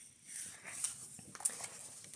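A page of a large hardcover book being turned by hand: a soft paper rustle, then a couple of light ticks as the page settles.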